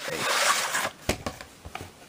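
A VHS cassette sliding out of its cardboard sleeve: a rasping slide of plastic against cardboard for about a second, then a sharp click and a few small ticks as the cassette is handled.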